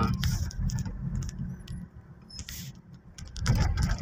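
Low engine and road rumble inside a moving car's cabin, with scattered light clicks and rattles through it.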